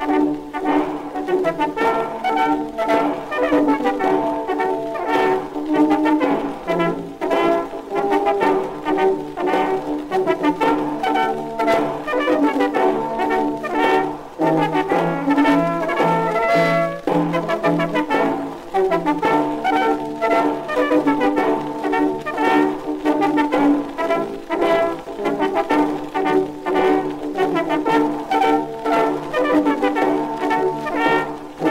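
Brass band playing a march, with trombones and trumpets over a steady beat. It is an acoustic-era 1912 shellac 78 rpm recording, so it sounds narrow, with little deep bass or high treble.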